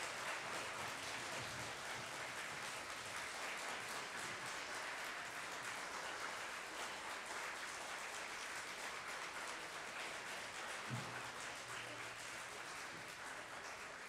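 Audience applauding, a steady patter of many hands that thins slightly near the end.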